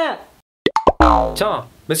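A long held shout falls away and cuts to dead silence. Then come a few quick pops and an abrupt deep, falling tone, then a man's voice saying "message".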